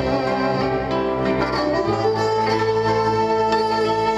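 A Hungarian folk band playing live, with a violin leading over the band's accompaniment. About two seconds in, the music settles onto long held notes over a steady bass.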